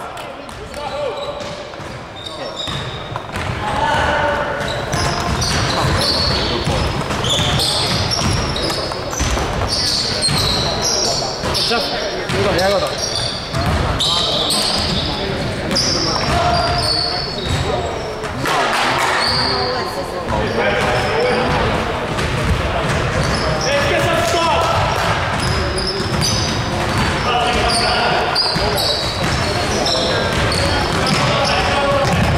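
A basketball game on a gym's hardwood court: the ball bouncing, sneakers squeaking in short high chirps, and players calling out, all echoing around the large hall.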